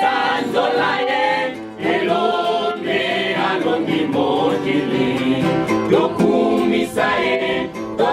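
A small choir of young men and boys singing a church hymn together in long held phrases.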